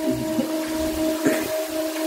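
Electric fans running: a steady hum over an even hiss of moving air, with one faint click about a second and a quarter in.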